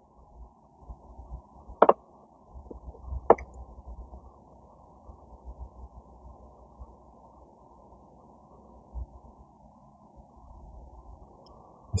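Two sharp snips of pruning shears cutting through spruce roots, about two and three seconds in, with faint rustling and handling of the root ball between and after them.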